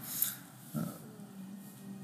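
A pause in a man's speech: a short breath just after the start, then faint room tone with small mouth or breath noises.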